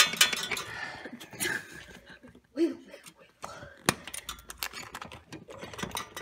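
Light metal clinks and sharp clicks from a cotter pin and brake linkage rattling as a copper wire tied to the pin is tugged, with one louder click about four seconds in. A short vocal sound comes about halfway through.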